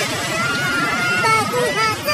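Several people shouting and yelling, without clear words, over a dense, continuous noise.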